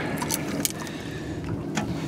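Low steady hum of a 90 hp outboard motor running at trolling speed, with a few sharp clicks and taps as a freshly caught rainbow trout is handled in a rubber landing net.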